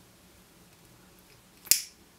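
A lighter being struck once, a single sharp click about one and a half seconds in, to get a flame for singeing the end of the braided body tubing.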